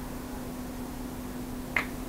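Small screwdriver prying at a stuck plastic dust cap on a plastic bicycle pedal: one sharp click near the end, over a faint steady hum.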